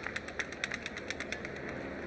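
A rapid, evenly spaced run of light clicks, like camera shutters firing in bursts, over a faint low hum of outdoor crowd ambience.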